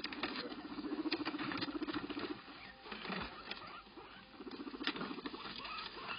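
Guinea pigs making a low, rapidly pulsing call, once for about the first two seconds and again about four and a half seconds in. Between and over the calls a paper bag crackles and rustles as they move in it.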